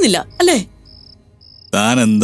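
Cricket-like chirping: short, high, even chirps about twice a second, heard clearly in a quiet gap. A voice ends just after the start and another loud voice or musical phrase comes in near the end.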